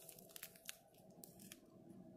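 Faint crinkling of a small plastic zip bag of round diamond-painting drills being handled in the fingers, with a few soft scattered clicks.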